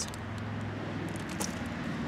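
A steady low background hum, like a distant vehicle or traffic, that fades about a second in, with a few faint clicks and rustles as plastic-wrapped craft packets and paper are handled.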